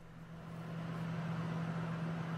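Laminar flow hood blower running: a steady hum with a rush of air hiss, swelling up over the first second and then holding level.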